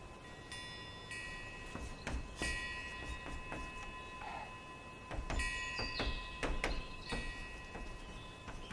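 Chalk tapping and scraping on a blackboard in short, irregular strokes as characters are written. Several times a high, bell-like ringing of several tones starts and fades within a second or so.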